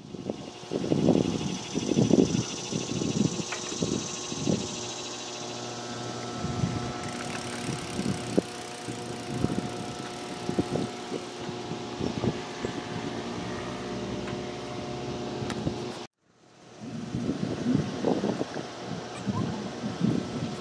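Outdoor ambience: wind gusting irregularly on the microphone over a faint steady engine hum. It is cut off suddenly about sixteen seconds in, then resumes.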